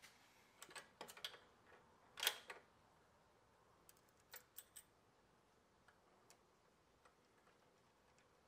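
A few faint metal clicks and taps as a threaded-stem workbench caster is fitted into its steel bracket and a nut is started by hand, the loudest about two seconds in; otherwise near silence.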